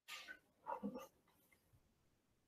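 Near silence on a call line, with one faint, short sound a little before a second in.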